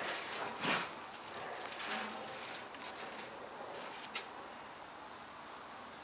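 Hands sifting and scooping loose potting soil in a plastic tub, a soft gritty rustling with a few louder scrapes in the first two seconds and a single click about four seconds in.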